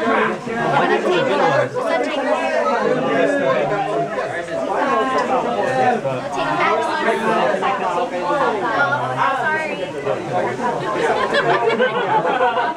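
Several people talking over one another: overlapping group chatter with no other sound standing out.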